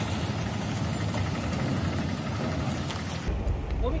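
Steady outdoor background noise with a low, vehicle-like rumble. The background changes abruptly a little past three seconds in, and a man's voice begins near the end.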